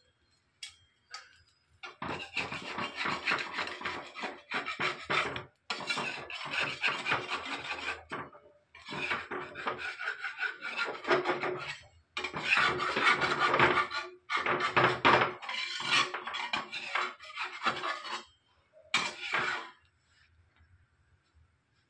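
Spatula scraping against an unoiled clay griddle as it is worked under a dosa to loosen it. It makes rasping strokes in repeated spells of a second or two to a few seconds, with brief pauses between them.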